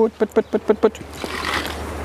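A man calling chickens with a quick run of 'put put put' calls, about six short syllables in the first second, then a faint steady low rumble.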